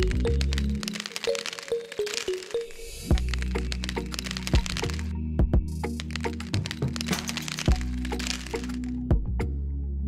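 Many small sharp clicks, as seeds are dropped onto sandy soil, in two dense runs over steady background music.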